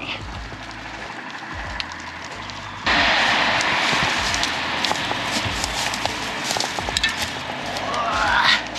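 Bicycle tyres rolling over dry fallen leaves and twigs, crackling and crunching; about three seconds in it suddenly gets much louder, with low bumps underneath.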